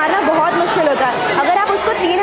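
A girl talking close to a clip-on microphone, with other voices chattering in the hall behind her.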